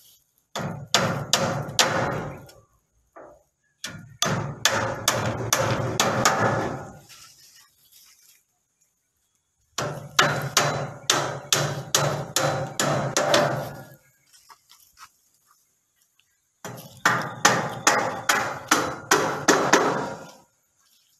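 Hammering on split bamboo slats laid over wooden joists. The blows come in four runs of quick strokes, about three a second, with short pauses between the runs.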